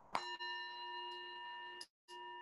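A singing bowl struck once, with a sharp strike followed by a long, steady ring of several tones. The sound drops out for a moment near the end.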